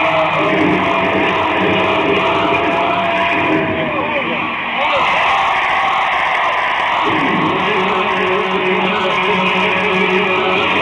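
Live electric guitar solo: a long sustained note that wavers and bends downward about four seconds in, with a lower held note joining about seven seconds in.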